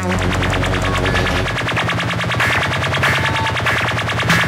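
Instrumental stretch of a live synthpunk/EBM track: a very fast, evenly repeating electronic pulse over a sustained synth bass, which moves to a higher note about one and a half seconds in.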